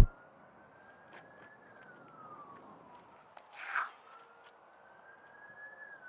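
Faint, distant siren slowly wailing up and down in pitch, two rise-and-fall cycles, with a brief rush of noise about midway.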